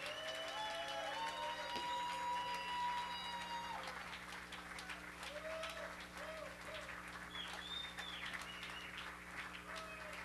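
A small audience applauding, cheering and whistling between songs at a rock show, with long held whoops in the first few seconds, then thinning out to scattered claps and shorter calls. A steady low electrical hum from the stage amplification sits underneath.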